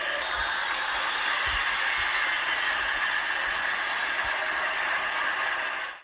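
Football stadium crowd noise, a steady even din with no single voice standing out, heard dull and thin as through a television broadcast.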